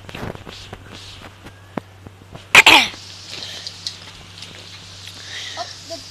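A person's loud, short vocal burst about two and a half seconds in, falling steeply in pitch, over light knocks and taps of handling on the phone microphone.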